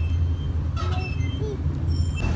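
Steady low engine rumble of road traffic close by, with a brief faint voice about a second in.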